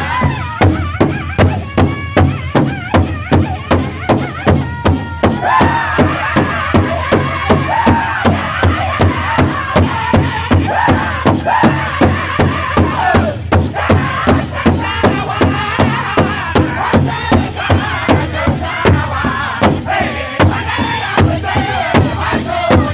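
Pow wow drum group singing in high, strained voices over a large shared powwow drum, the whole group striking it in unison at a steady beat of about two strokes a second.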